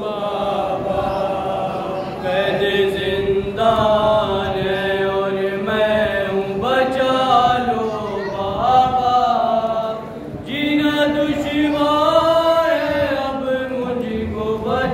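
Male reciters singing a noha, a Shia mourning lament, in Urdu into a microphone, without instruments, in long drawn-out melodic phrases. The singing breaks briefly about ten seconds in, then resumes.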